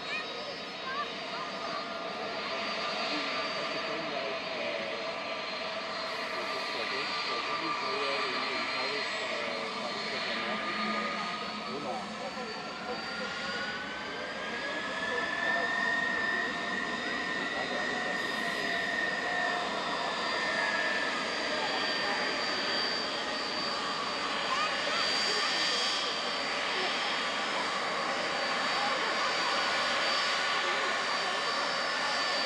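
A Turkish Airlines airliner's jet engines whining as it taxis past. A high tone glides up in pitch and back down through the middle, and the sound grows slightly louder toward the end.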